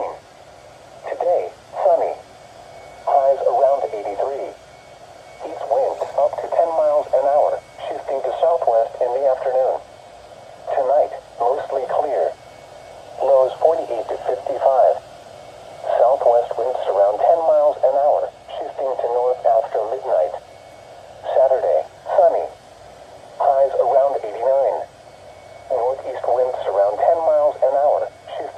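Automated voice of a NOAA Weather Radio broadcast reading the weather forecast through a Midland weather radio's small speaker. The speech comes in short phrases with brief pauses and sounds thin and narrow.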